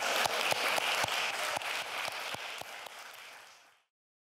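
Audience applause with individual hand claps standing out. It fades steadily and cuts off to silence near the end.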